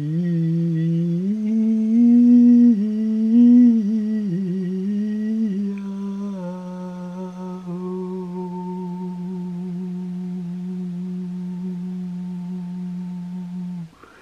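A single low voice humming a chanted mantra in one long breath. The pitch rises and steps about over the first five or six seconds, then holds one steady low note for about eight seconds before stopping abruptly.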